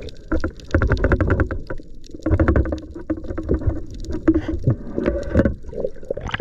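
Muffled underwater sloshing and bubbling with crackling clicks, heard through a camera's waterproof housing as a spearfisher moves through the water; it comes in irregular surges rather than as a steady sound.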